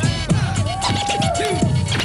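Hip hop music: a drum beat with turntable scratching, the record's pitch swooping up and down several times.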